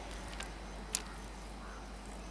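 Faint steady outdoor background with a low hum and a few short, high-pitched chirps or ticks, one sharper click about a second in.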